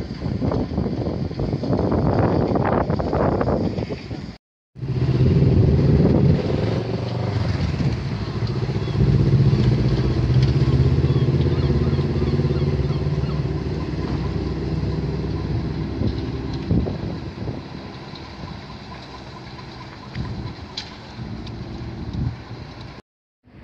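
Outboard motor on a small open boat running steadily as it passes across the harbour, then fading slowly as the boat moves away. A rougher rush of noise fills the first few seconds before a brief break in the sound.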